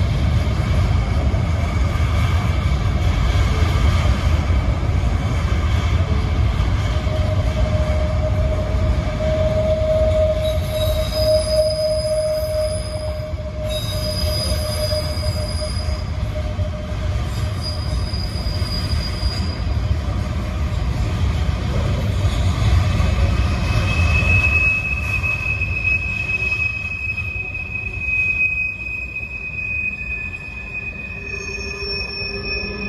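Freight train cars rolling across a rail viaduct: a steady low rumble of wheels on rail with squealing wheels. A long lower-pitched squeal runs through the middle, with higher squeals coming and going over it, and a high steady squeal starts near the end.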